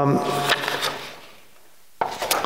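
Sheets of paper handled at a microphone-fitted lectern: two brief rustling taps about a third of a second apart, then quiet room tone.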